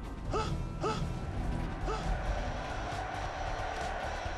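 Animated robot sound effects: three short mechanical servo whirs, each rising in pitch, in the first two seconds, followed by a steady noise.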